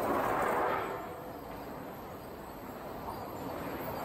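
Steady mechanical din of sawmill machinery around the board grading line. It is louder for about the first second, then eases to a lower, even level.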